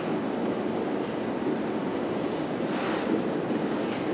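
Steady room noise in a lecture hall: an even hiss with no distinct events.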